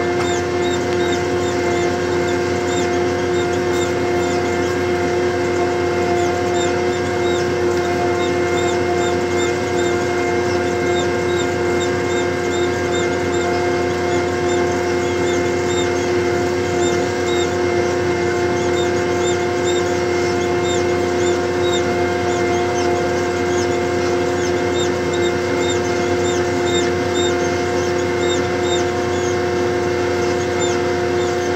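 McCormick XTX tractor running steadily under load as it pulls a disc harrow, heard from the cab, a constant drone with a steady whine in it. Faint high squeaks recur irregularly throughout.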